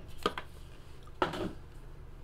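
Two brief handling knocks as cards and their small cardboard box are handled on top of a metal card tin: a light one about a quarter second in and a louder one just after a second.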